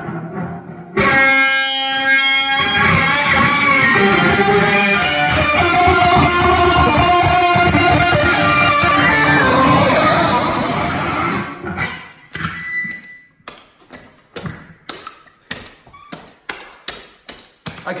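Electric guitar played loud through a heavily distorted drive pedal into a Fender combo amp. A held chord rings out about a second in, then fast, dense riffing runs for about ten seconds, and from about twelve seconds on there are only short, choppy stabs.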